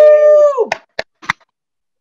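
A person's long, held cheer on one high pitch that slides down and breaks off about half a second in, followed by three short, sharp sounds.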